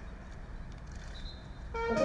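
A low steady outdoor rumble, then near the end a brass band strikes up, with sustained brass chords.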